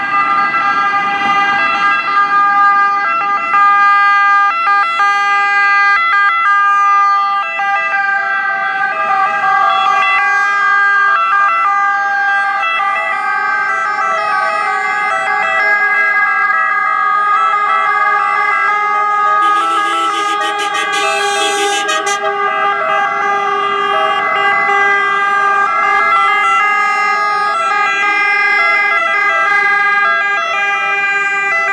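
Sirens of several civil-protection emergency vehicles sounding at once as they drive past in convoy, their tones overlapping into a loud, steady wail. About twenty seconds in, a brighter, harsher sound joins for about two seconds.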